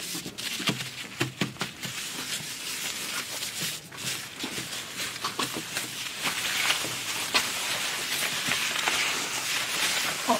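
Tissues rustling and rubbing across a desk as spilled water is wiped up, with scattered small knocks and clicks of objects being moved.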